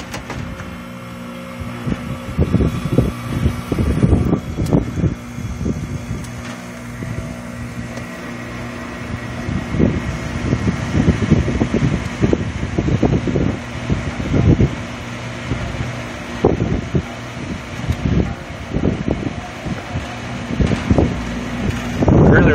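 Goodman outdoor condenser unit running with its new condenser fan motor: a steady electrical hum holding several even tones, drawing about two amps, under the motor's 3.96 A rating. Irregular gusts of air from the fan buffet the microphone.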